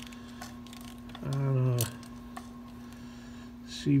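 A steady low electrical-sounding hum, with a man's short murmur a little over a second in and a couple of faint clicks.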